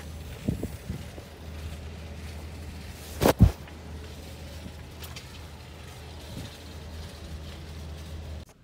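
An SUV's rear liftgate being opened. A loud thump comes about three seconds in, and a few lighter knocks come near the start, all over a steady low hum.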